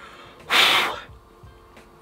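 A man's single breathy exhale blown out through pursed lips, lasting about half a second, starting about half a second in.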